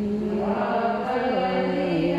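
A man's voice reciting the Quran in a melodic chant, holding long notes whose pitch steps up and down a few times.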